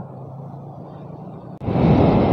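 A low steady hum, then an abrupt switch about one and a half seconds in to a moving motorcycle: engine and wind rushing over the camera microphone, much louder.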